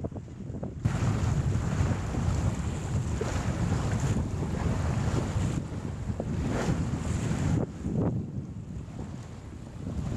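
Wind buffeting the microphone aboard a sailboat under sail, a rough, gusting rumble. It rises sharply about a second in, dips briefly a few times and eases near the end.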